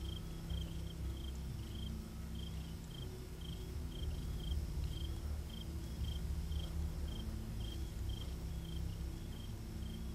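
A cricket chirping in short, high pulses at one pitch, about two a second, over a steady low hum.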